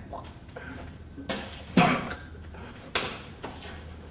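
A few brief knocks and clatters, the three clearest spread about a second apart, over a low steady room hum.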